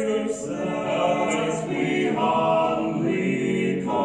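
A stage musical's ensemble cast singing together in harmony, holding long notes, with a short break between phrases near the end.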